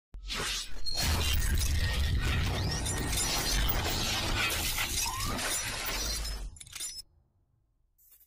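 Logo-intro sound effect: a long noisy shattering crash over a deep rumble, with a few sweeping whooshes, cutting off about seven seconds in.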